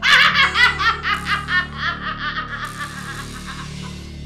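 A woman laughing loudly, breaking in suddenly with a rapid string of ha-ha bursts, about five a second, that fade away over about three seconds.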